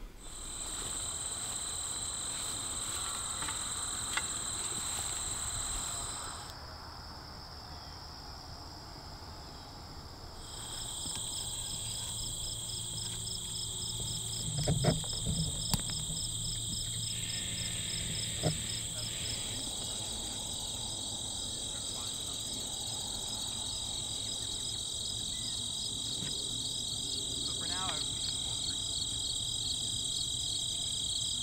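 Late-summer insect chorus: steady, high-pitched trilling in several continuous tones, one of them pulsing rapidly. The steadier trills drop out for a few seconds from about six seconds in, leaving the pulsing one, then return.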